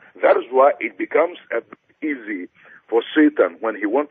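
Speech only: a man talking steadily, with no other sound standing out.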